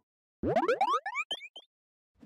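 A title-card sound effect: a quick flurry of overlapping rising pitch glides, starting about half a second in and lasting about a second.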